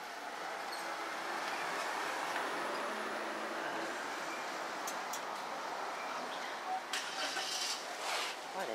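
Street traffic noise: a vehicle passing on the road, a steady rush that swells over the first couple of seconds and then holds, with a few short clicks near the end.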